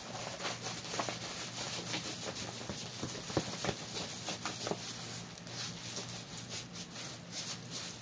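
A rolled diamond painting canvas being rolled back by hand to make it lie flat: continuous rustling and crinkling, with many small scattered clicks.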